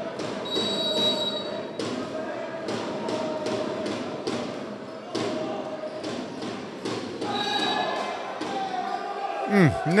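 A volleyball rally in an echoing sports hall: a string of sharp slaps and thuds as the ball is served, passed and spiked, over a steady din of crowd voices.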